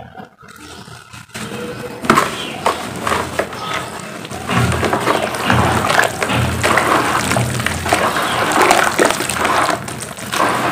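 Hands squeezing and kneading wet cement paste in a basin of water: wet squelching and sloshing that starts about two seconds in after a quieter start and then keeps going.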